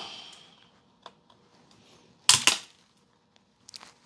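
Hard plastic SGC grading slab snapping as cutters bite into its corner: one loud, sharp crack a little past halfway, with a faint click about a second in and a few small clicks near the end.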